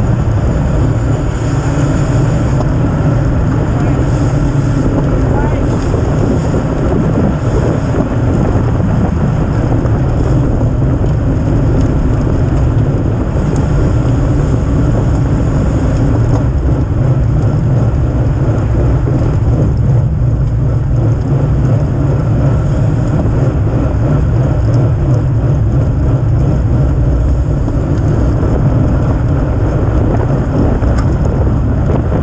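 Steady, loud wind rush over a bicycle-mounted action camera's microphone, riding in a road-race pack at around 25–29 mph.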